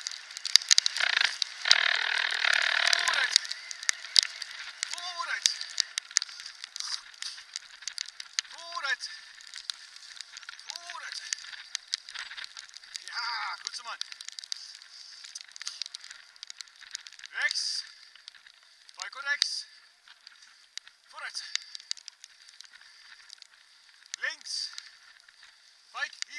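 Bicycle rolling fast over a dirt forest path, its tyres crackling over grit and leaves and the frame rattling, with a louder rush in the first few seconds. Short high squeaks come every few seconds.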